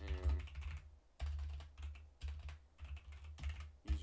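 Typing on a computer keyboard: runs of quick key clicks in short bursts with brief pauses between them.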